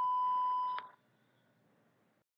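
A steady electronic beep, one unwavering high tone that cuts off sharply about a second in. It is the segment-end cue of a NAATI CCL practice dialogue, signalling the candidate to start interpreting.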